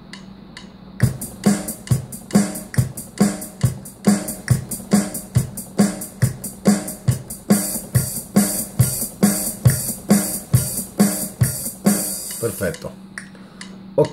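Arranger keyboard drum sounds playing a steady beat at about two strokes a second, a kick-like hit on each stroke, recorded against a 120 bpm click; it starts about a second in, a hi-hat or cymbal joins about halfway through, and it stops just before the end.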